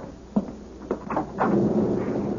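Sound effect of a front door being unlatched and opened: a few short clicks and knocks, then about a second and a half in, storm noise from outside swells up and carries on.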